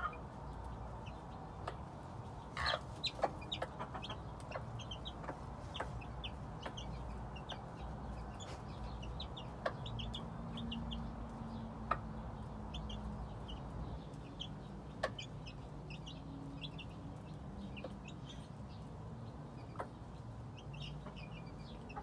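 A game hen clucking low to her young chicks, which peep in short high notes scattered throughout, with a few sharp taps from the birds on the ground.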